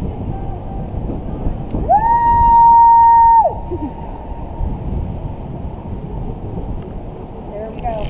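Wind rumbling steadily on the microphone. About two seconds in, a single long high-pitched note sweeps up, holds level for about a second and a half, then slides down and stops.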